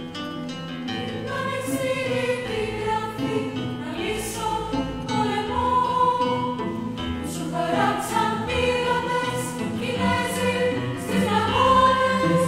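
Women's choir singing long held notes over a chamber ensemble in a slow introduction, the sound swelling gradually louder.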